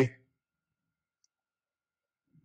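Near silence: a man's voice cuts off at the very start, and only a single tiny tick is heard just past a second in.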